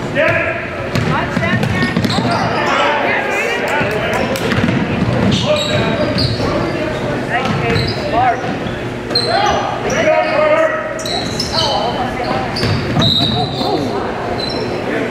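A basketball bouncing on a hardwood gym floor during play, with many short high sneaker squeaks and players and spectators shouting and chattering, all ringing in the gym hall.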